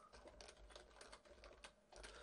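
Faint computer keyboard typing: a quick run of about a dozen keystrokes as a short text comment is typed.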